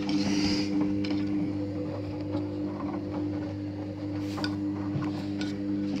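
Hoover HJA8513 front-loading washing machine running its cotton 60 wash, a steady mechanical hum, with a few light clicks.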